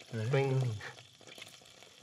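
A man's short vocal sound, under a second long, then a quiet stretch with faint small clicks of chewing.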